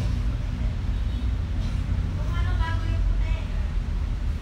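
Indistinct voices in the background, clearest about two to three and a half seconds in, over a steady low rumble.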